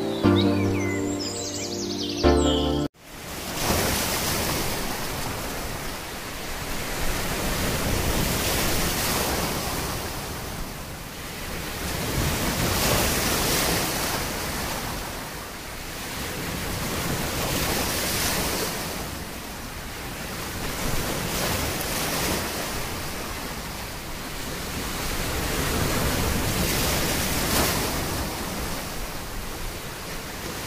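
Ocean surf breaking over a rocky shore, a steady wash that swells and ebbs every four or five seconds. About three seconds in, it takes over from a short stretch of music, which cuts off suddenly.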